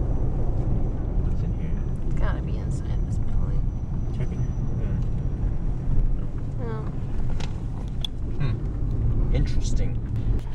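Car cabin noise while driving: a steady low rumble of engine and road, with a brief bump about six seconds in.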